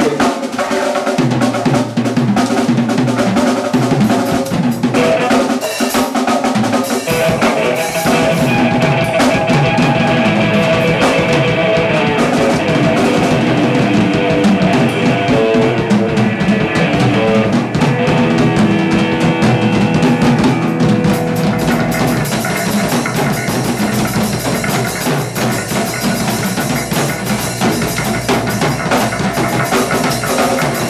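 A rock band plays live: a drum kit with bass drum and cymbals, and guitar from one player playing two guitars at once. The music starts abruptly, and about twenty seconds in the cymbals get busier.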